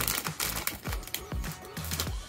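Foil blind-bag wrapper crinkling and tearing in a run of small crackles as it is torn open and a card in a cardboard sleeve is slid out, with background music underneath.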